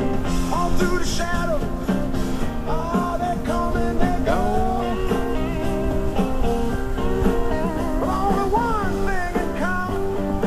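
A rock song with singing over guitar backing, playing steadily.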